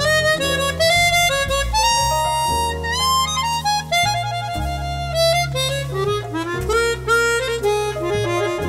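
Chromatic harmonica playing a continuous melody of changing notes, with the harmonica cupped in the hands around a microphone. Sustained low tones sound underneath the melody.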